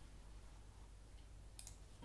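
Near silence: quiet room tone, with two faint clicks near the end from a computer mouse or laptop button.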